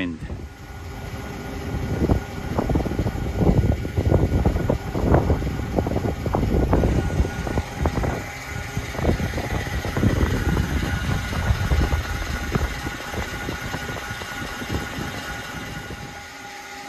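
Strong gusty wind buffeting the microphone in loud, uneven low rumbles, easing off in the last few seconds. Under it runs a steady machine hum with a few thin whining tones.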